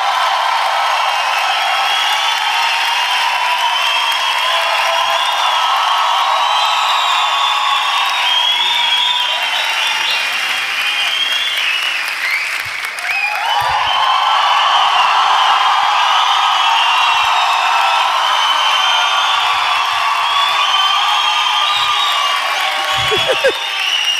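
A theatre audience applauding and cheering at length after a stand-up set ends. The applause dips briefly about halfway through, then swells again.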